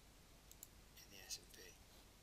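Near silence with a few faint clicks about half a second in, then a brief faint mumble of a man's voice from about a second in.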